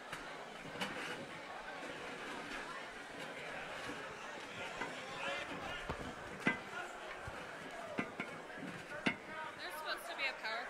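Low murmur of many people talking at once in a large hall, with a few sharp knocks, the loudest about six and a half seconds in.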